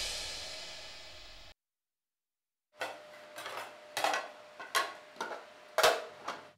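A music cue dying away in the first second and a half, then after a short silence a string of clinks and clatters of ceramic crockery being handled: plates and a serving-dish lid knocked and set down on a table, the loudest knock near the end.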